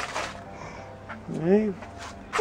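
One short wordless voice sound, rising then falling in pitch, about a second and a half in, against a quiet background.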